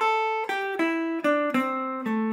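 PRS electric guitar playing a single-note blues line through the box-one A minor pattern: a run of five or six picked notes stepping down in pitch one after another.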